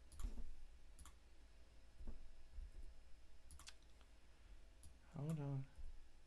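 A handful of separate computer mouse clicks, spaced a second or so apart, with a short hummed vocal sound from a man near the end.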